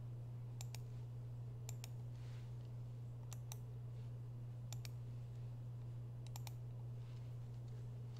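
Computer mouse clicks in quick pairs, about five times, over a steady low hum.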